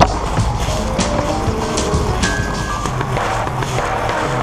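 Small tricycle wheels rolling over a concrete sidewalk, a steady low rumble with a few sharp clicks, heard close up from a camera mounted on the trike. Background music plays over it.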